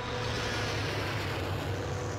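Spaceship engine sound effect as a large starship passes close by: a steady low drone with a hiss over it and a faint hum.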